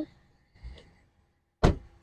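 International Prostar's cab door slamming shut once near the end, a single sharp bang with a short ring. A faint thump comes about half a second in.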